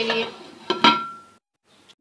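A single metal-on-metal clink from the cooking pot with a short ringing tone, about a second in. It fits a lid being set on the pot to cook the curry on dum. The sound then cuts off suddenly to silence.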